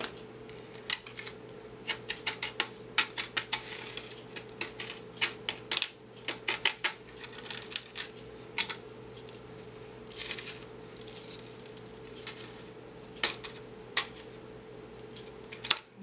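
Glass glitter being handled in a plastic craft tray: grains scatter and a small tool pushes them against a glass ornament's taped edges, giving irregular small clicks and taps, then a soft scraping about ten seconds in. A faint steady hum runs underneath.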